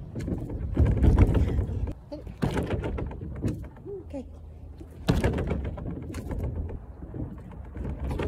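Agility A-frame of steel frame and composite boards under a rubber skin being run over, heard from on the board: heavy low thumps and rattling as the boards bounce and flex. The thumps come in bouts, heaviest about a second in and again about five seconds in.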